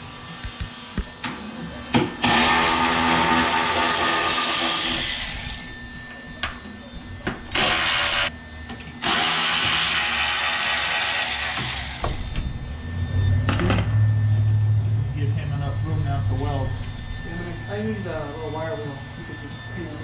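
Small handheld power tool run against the sheet metal at the car's fender in three bursts: about three seconds, a brief blip, then about three seconds more, each starting and stopping abruptly. After that, a low steady hum with faint voices.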